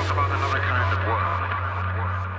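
Open-air ambience: faint, indistinct voices over a steady low hum.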